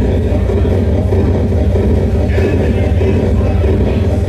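Loud, steady, bass-heavy synthesized music generated by a 256-byte intro program, played over a hall's PA system.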